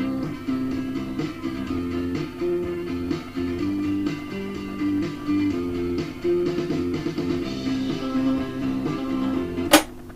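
Music played back from tape on a 1964 Peto Scott valve reel-to-reel through a replacement head from a 1990s stereo, held in place by hand. The new head gives weak playback that needs the volume turned way up, though it lifts the high frequencies a little. It ends with a sharp click just before the end, after which the music stops.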